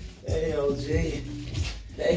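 A dog whining, in a series of bending, rising cries, over music with vocals playing in the room.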